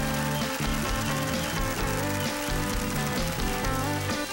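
A live band playing upbeat dance music on electric guitars, bass, keyboard and drums.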